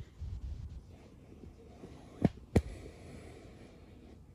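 Low handling bumps, then two sharp clicks about a third of a second apart a little past halfway: a camera being moved and repositioned on its mount.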